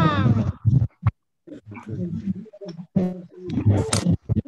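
Indistinct vocal sounds over a video call. The first is drawn out and falls in pitch, and more scattered sounds follow with short gaps.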